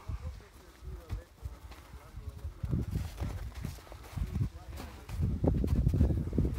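Footsteps crunching and clattering irregularly over loose volcanic rock, with wind rumbling on the microphone. People's voices come in near the end.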